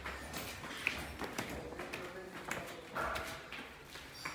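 Footsteps on bare concrete stairs and floor: a series of irregular hard knocks.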